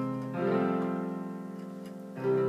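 Casio electronic keyboard with a piano sound: a held chord gives way to a new chord struck about half a second in, which rings and slowly fades. It is the augmented C chord resolving into an F chord.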